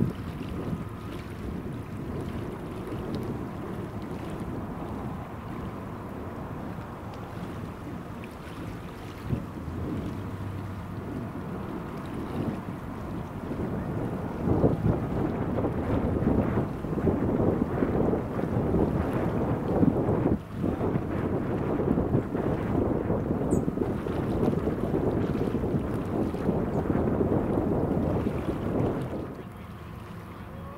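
Wind buffeting an outdoor microphone: a low, rumbling gusty noise that grows louder and rougher about halfway through.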